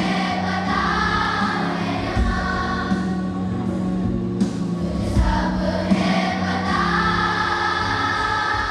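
Children's choir singing together, with a steady low held note underneath; the voices ease off briefly in the middle and then swell again.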